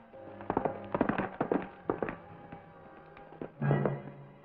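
Hoofbeats of a horse galloping away, fading after about two seconds, over orchestral background music that swells with a loud low chord near the end.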